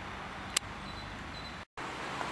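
Outdoor city background with a steady, faint hum of distant traffic, broken by one sharp click about half a second in and a brief cut to silence near the end.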